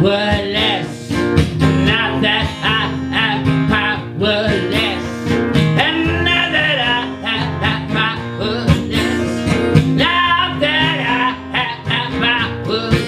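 Live acoustic song: a man singing while strumming an acoustic guitar.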